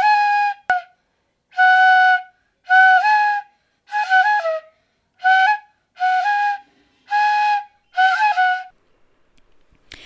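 A bansuri, an Indian bamboo flute, playing a short tune of about eight separate breathy notes, each about half a second long with brief gaps between them. Some notes step up or down a little in pitch.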